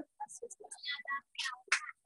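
Faint, indistinct speech and whispering from people in the room, in short broken snatches.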